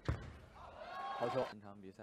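One sharp knock of a table tennis ball being hit just after the start, followed by a raised voice calling out for about a second.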